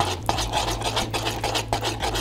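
A spoon scraping and stirring thick sauce against the inside of a wooden bowl, in quick repeated strokes, about four or five a second.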